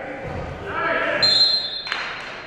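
High school wrestlers scuffling and landing on the mat during a takedown, with a thud early on and a sharp impact just before the end. Shouting from the gym sits under it, and a brief high, steady squeal comes about halfway through.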